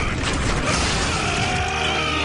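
Cartoon sound effect of a heavy statue being wrenched up out of aquarium gravel: loud, continuous creaking and grinding.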